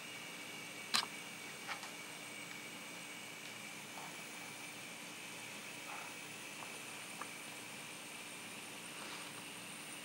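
N scale model intermodal train running at low speed on track: a faint steady whine and hiss, with a few light clicks of wheels on rail, the sharpest about a second in.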